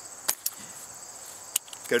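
Steady high trilling of crickets, with two sharp clicks of the nylon pack's flap and fittings being handled, one just after the start and one near the end.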